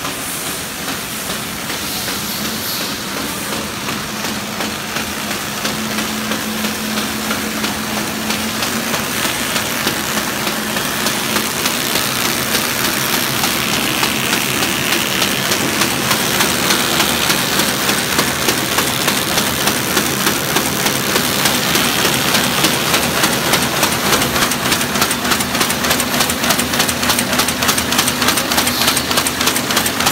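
Square-bottom paper bag making machine running: a steady mechanical clatter with a fast, even rhythm that grows louder toward the roller-and-cam forming section, over a low steady hum at first.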